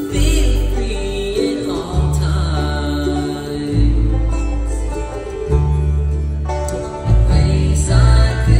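Live bluegrass band playing, with mandolin, fiddle, five-string banjo, acoustic guitar and upright bass notes changing every second or two underneath.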